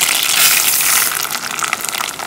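Raw white rice poured into hot oil in a pot, a loud rushing sizzle for about the first second, then quieter sizzling with quick crackles as the grains are stirred with a silicone spoon.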